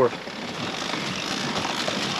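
Steady rushing of wind and water around a sailing yacht under way, growing a little louder.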